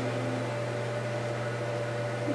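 Steady background hum: a low drone with a fainter, higher steady tone over a light hiss, unchanging throughout.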